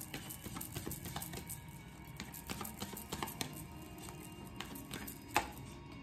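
Soft background music under the light rapid clicking and riffling of a deck of oracle cards being shuffled by hand, with one sharper snap of the cards about five seconds in.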